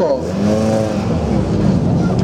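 Opel Astra GSi rally car's engine revs up and back down in the first second as the car pulls away, then runs on steadily.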